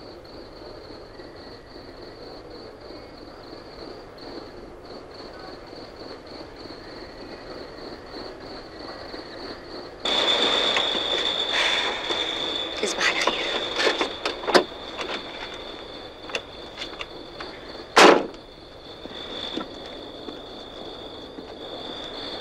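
A car scene on an old film soundtrack: a quiet, steady hum at first. About halfway there is a sudden louder rush of noise with a high steady whine and a run of clicks and knocks. Near the end a car door shuts with a single loud thump.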